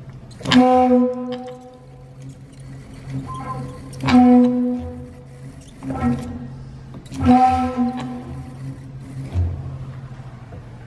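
Pipe-organ notes triggered by the installation's sensors, sounding one at a time on much the same pitch: three strong held notes about three seconds apart with fainter ones between, each starting with a sharp click. A steady low hum runs underneath.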